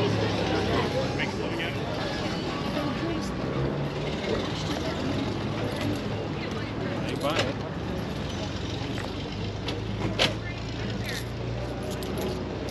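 People talking at a distance, with no clear words, over a low steady hum of a vehicle engine running. A couple of sharp clicks come about seven and ten seconds in.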